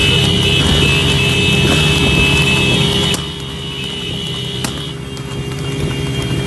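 Motorcycles running at speed on a road, their engines a steady low rumble, with held high tones over them; the whole sound drops in level about three seconds in.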